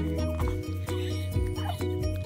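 Background music with sustained notes and a steady beat. A baby makes two short coos over it, about half a second in and near the end.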